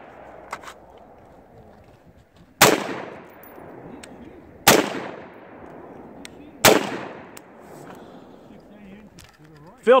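Three gunshots at a shooting range, about two seconds apart, each a sharp crack followed by a long echoing tail.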